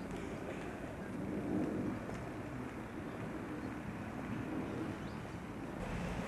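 Outdoor city street ambience picked up by a camcorder's built-in microphone: a steady rumble of distant traffic.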